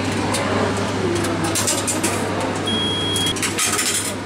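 A souvenir token vending machine running: a steady low hum with clicks and rattles, most of them in the second half, and one short high beep a little under three seconds in.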